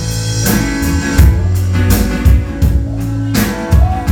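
Live rock band playing with no singing: acoustic and electric guitars over a drum kit, with regular drum hits and sustained low notes.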